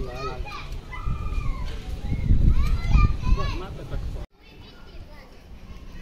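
Several voices talking, then an abrupt cut about four seconds in to a quiet outdoor background.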